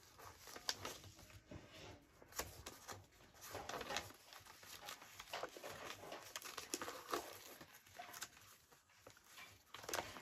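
Paper scraps being handled and sorted: soft rustling with scattered light taps and clicks.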